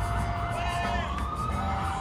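Emergency vehicle siren over city street traffic rumble: a held tone that glides up in pitch about a second in.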